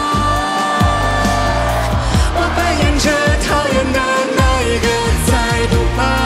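A woman sings a sustained, gliding melody line into a handheld microphone over a hip-hop backing track, with deep bass hits that drop in pitch.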